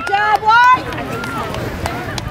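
People shouting on a soccer field: a few short, high-pitched calls in the first second, then open-air noise with a few faint knocks.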